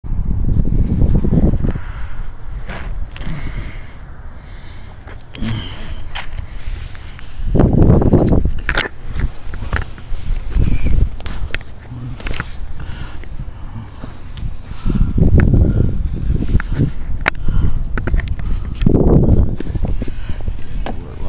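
Handling noise from a body-worn camera: low rumbling swells as it rubs and bumps against clothing while the wearer moves, with scattered sharp clicks and knocks between them.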